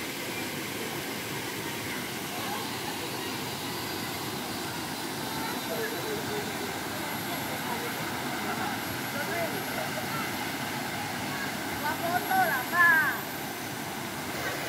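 Steady rushing of a small waterfall and stream running over rocks, with distant voices of people bathing in the pool. Near the end a person gives a loud, high shout.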